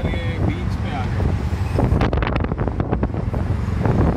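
Auto rickshaw's small engine running steadily as it rides through traffic, heard from inside the open cabin with wind on the microphone. A run of short sharp knocks or cracks comes in from about halfway.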